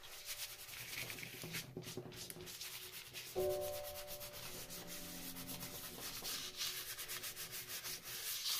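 A rag rubbing rapidly back and forth over paper and a 3D-pen PLA plastic lattice, a quick run of scratchy strokes. About three and a half seconds in, a held tone of several pitches comes in suddenly and fades over the next two seconds.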